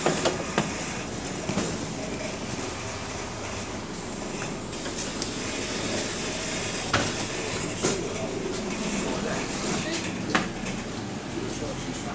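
Interior of a bus at a stop: the bus's engine running steadily, with a few sharp clicks and knocks near the start and again later on.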